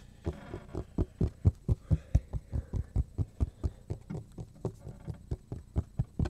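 Fingers and palm tapping and patting the face of a cutting board: a quick, steady run of dull thuds, about four or five a second, starting a moment in.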